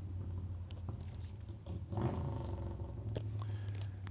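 Vinyl LP jackets being handled: cardboard sleeves scraping and sliding as records are lifted from a bin, with soft clicks, over a steady low hum.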